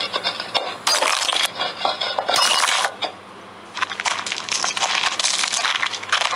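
Sound effect of a tomb being opened: clattering, clinking and crunching noises, dense and irregular, with a brief lull about three seconds in.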